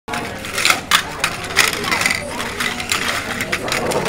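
Pin-back button badges clicking and clattering against each other as a hand sifts through a pile of them, with voices in the background.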